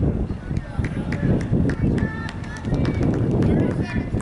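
Outdoor sideline ambience at a youth soccer game: a steady low rumble of wind on the microphone, faint distant voices calling, and a scatter of sharp clicks.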